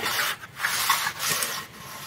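A straightedge rule scraped along fresh cement plaster on a sunshade edge, a rasping scrape in several short strokes with brief pauses.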